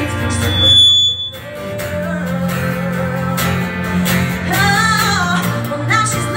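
Live acoustic trio playing a pop-rock cover: a woman singing over acoustic guitar and cello. The music drops back briefly about a second in, then a long low note is held while the singing comes back in.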